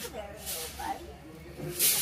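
Soft, indistinct voices with two short hissing noises; the louder hiss comes just before the end.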